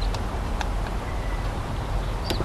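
Faint clicks of a screwdriver working a screw terminal, over a steady low rumble of wind on the microphone. A faint bird chirp about a second in.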